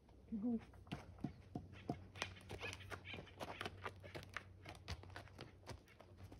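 A donkey walking across a packed-dirt yard, its hooves making a run of soft, irregular steps and scuffs.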